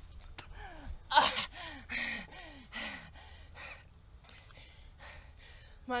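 A wounded woman's pained gasps and moans: four breathy, falling cries about a second apart, the first the loudest, as she lies injured. Near the end she begins to speak.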